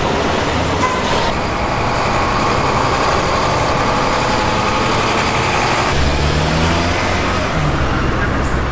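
City street traffic: cars and trucks passing with their engines running. About six seconds in, a deeper engine note comes in and rises slightly.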